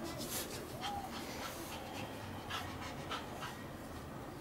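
Shih tzus panting and scuffling as they play-wrestle, with small short scuffs and clicks.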